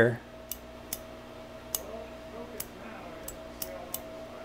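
Light clicks, about seven at uneven intervals, from a disassembled two-position rotary detent switch being handled and turned by hand.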